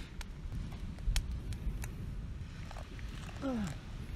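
A few sharp, scattered clicks over a low rumble, with a short falling hum from a person's voice near the end.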